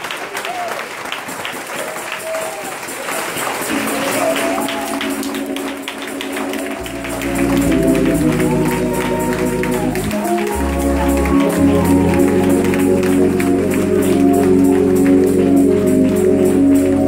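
Congregation clapping in a steady rhythm as instrumental church music starts: held chords enter about four seconds in and a bass joins a few seconds later, with the sound growing louder.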